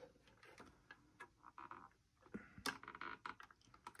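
Faint, scattered small clicks and taps from a hot glue gun and a plastic toy car chassis being handled while a servo is glued in place, with one sharper click a little before three seconds in.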